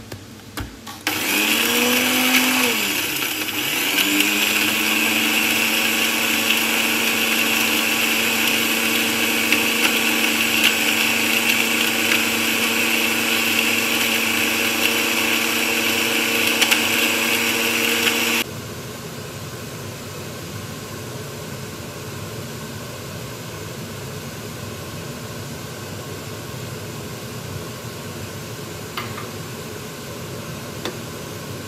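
Countertop blender with a glass jar grinding dry ingredients to a powder. It starts about a second in, its pitch wavering for a few seconds as the motor gets up to speed, then runs steadily and loudly before stopping abruptly about two-thirds of the way through. A steady, quieter hiss follows.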